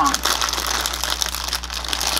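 Wrapper of a Kit Kat crinkling while being handled, a dense run of small crackles.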